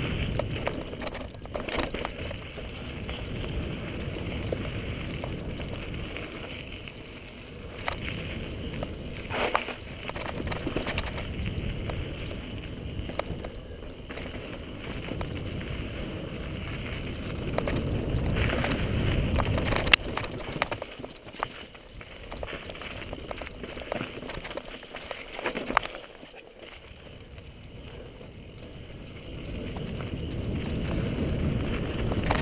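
Mountain bike descending a dirt and rock singletrack: a steady rush of wind on the microphone and tyres rolling over dirt, with scattered sharp knocks and rattles from the bike over rocks. The sharpest knock comes about two-thirds of the way through, and the noise drops for a few seconds near the end.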